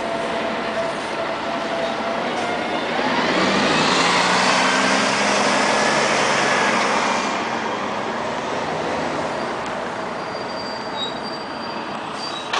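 Street traffic noise, with one heavy vehicle passing close by between about three and seven seconds in, its engine or drive note rising as it goes.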